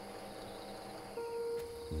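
Night-time ambience of insects, crickets by their sound, chirping steadily, with a soft held music note coming in about halfway through.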